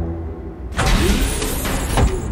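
Intro sound effect of a mechanical iris door opening: under a low, dark music drone, a loud rushing, hissing noise starts about three-quarters of a second in and builds to its loudest point near the end.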